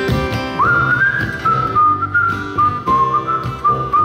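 A person whistling a slow melody over strummed acoustic guitar, the whistle coming in about half a second in and stepping between long held notes.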